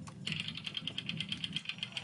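Spinning prize wheel ticking: a rapid, even run of sharp, high clicks starting a moment in, as the wheel turns past its pegs.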